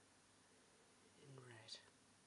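Near silence, with a faint murmured voice for about half a second near the end, closing on a soft hiss.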